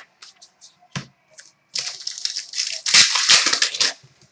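A foil trading-card pack being torn open and its wrapper crinkled: a crackling rustle of about two seconds in the second half, after a single click about a second in.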